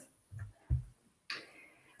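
A pause in speech with two soft, deep thumps in the first second, then a brief breath-like noise shortly before talking resumes.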